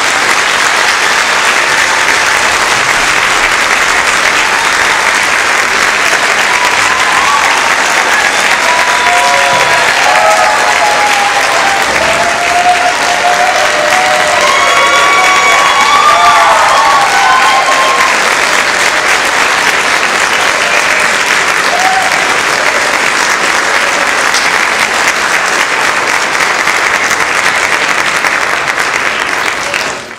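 Audience applauding steadily throughout after a concert band's final piece, with a few voices cheering in the middle stretch.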